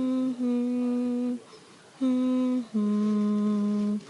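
A person humming a slow lullaby in long, steady held notes, with a short pause midway; the last note is lower and longer.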